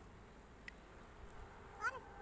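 A short animal call with a wavering pitch, like a cat's meow, near the end, over a faint quiet background with a small click about halfway in.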